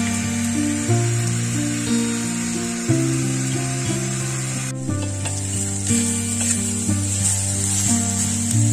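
Food sizzling as it fries in a pot over an open wood fire, a steady hiss that breaks off briefly about halfway through. Background music of slow held chords plays underneath, changing about once a second.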